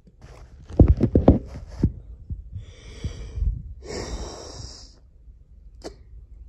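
A quick run of loud, low knocks and thumps about a second in, then two breathy sniffs or exhalations from a person close to the microphone, the second louder.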